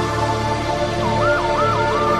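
Cumbia sonidera music with a siren-like high tone coming in about a second in, sliding rapidly up and down about three times a second and then holding with a slight wobble over a steady music bed.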